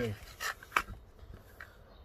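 Hands handling a box of matches on a wooden table: a short rustle, then one sharp click a little before the middle.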